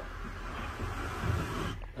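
Wooden trundle bed frame being pulled out from under a daybed, sliding with a steady rubbing noise and a few soft low knocks.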